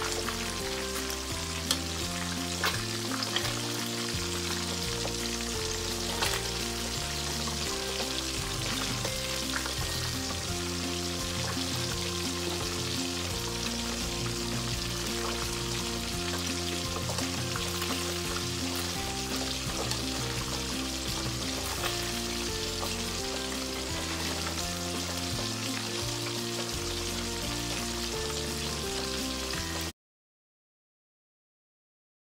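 Pieces of fish deep-frying in hot oil in a pan: a steady sizzle, with a few clicks of metal tongs as the pieces are turned.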